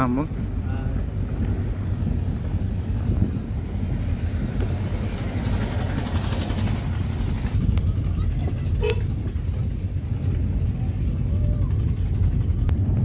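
Steady low rumble of a car's engine and tyres heard from inside the cabin while driving slowly on a dirt road, with a swell of noise about halfway through and a single short knock near the end.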